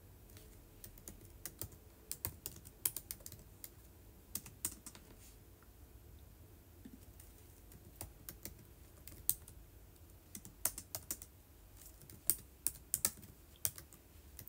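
Light, irregular clicks and taps of typing, coming in short clusters with brief gaps between them.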